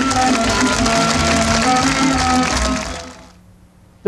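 Traditional Ukrainian folk dance music played by a band, fading out about three seconds in.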